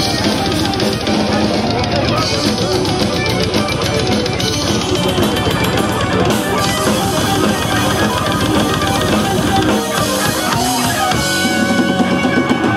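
A metal band playing live and loud: distorted electric guitar over fast, dense drumming. About ten seconds in, the heavy low end drops away and held guitar notes carry on.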